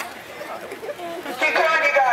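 Crowd of fans chattering, then a loud, high-pitched shout from one voice about a second and a half in.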